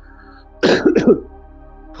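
A man clears his throat in two short, rough bursts about half a second in.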